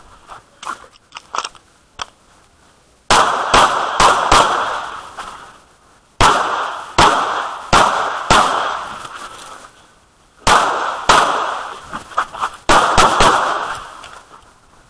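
Semi-automatic pistol firing in quick strings of several shots with short pauses between strings, each shot followed by a ringing echo tail. A few light clicks come in the first two seconds before the shooting starts about three seconds in.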